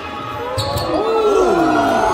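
Basketball shoes squeaking on a hardwood gym court. Several squeaks slide up and down in pitch, starting about half a second in, just after a sharp knock.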